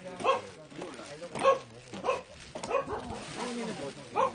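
Dogs barking: five or six short, separate barks spread over a few seconds.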